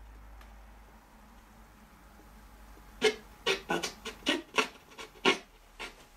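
Footsteps scuffing and crunching over debris on the floor: a quick, irregular run of short sharp sounds that begins about halfway through, after a few seconds of low room hum.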